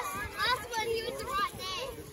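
Several children's high-pitched voices chattering and calling out at once, overlapping one another.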